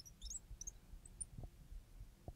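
Marker tip squeaking faintly in short, high chirps as it writes letters on the board.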